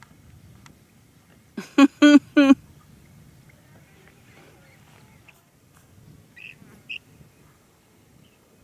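Canada goose honking: four loud, short honks in quick succession about a second and a half in. Two fainter short high chirps follow near the end.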